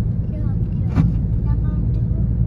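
Steady low rumble of road and engine noise heard inside a moving car's cabin, with a short knock about a second in.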